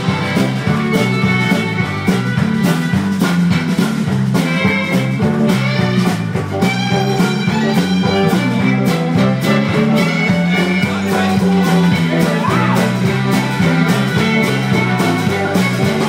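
Rock band playing live in an instrumental passage with no singing: guitar over a stepping bass line and a steady drum beat.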